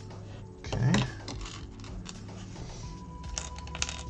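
Plastic Lego bricks clicking and rattling as they are picked from a tray and pressed together, with a louder clatter about a second in and a run of quick clicks near the end. Quiet background music plays throughout.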